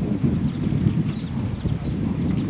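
Wind buffeting the microphone: a loud, uneven low rumble. Behind it a small bird chirps, short high notes repeating a few times a second.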